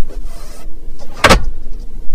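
Protective plastic film on a car's glovebox lid rustling under a hand, then a single sharp knock about a second in.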